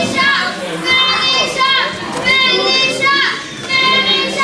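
Children in the crowd at a wrestling match chanting together in high voices, the same call repeated about once a second.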